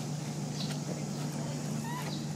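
A few faint, short, high animal squeaks, one rising in pitch near the end, over a steady low hum.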